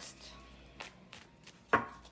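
Tarot cards handled and shuffled by hand: a few soft card clicks and taps, then one sharp knock near the end.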